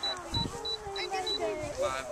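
Model rocket altimeter beeping out its recorded peak altitude: a run of about five short, high beeps at one pitch, evenly spaced, with voices underneath.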